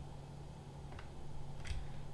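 Quiet room tone with a steady low hum, broken by two light computer clicks, one about a second in and one near the end.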